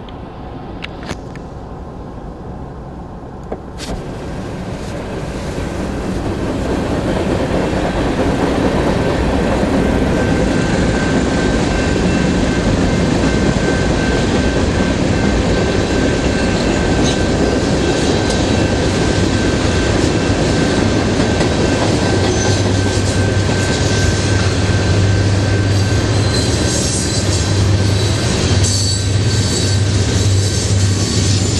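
Freight cars of a BNSF manifest train rolling over a grade crossing: a steady rumble and clatter of wheels on rail that grows louder over the first several seconds, with a thin steady squeal above it. Near the end a low engine drone comes in as a diesel locomotive in the train approaches.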